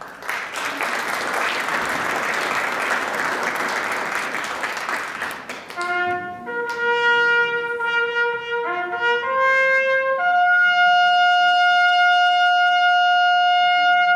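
Brass band with saxophones playing: a dense noisy wash of sound for about the first six seconds, then a brass phrase of a few short notes that ends on a long held note.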